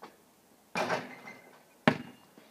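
A basketball hits the hoop about three quarters of a second in, with a short ringing clang, then bounces once sharply on pavement near the end.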